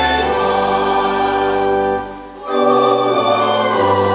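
A choir sings a hymn with pipe organ accompaniment, in sustained chords over deep bass notes. About halfway through, the music drops out briefly between phrases, then comes back in.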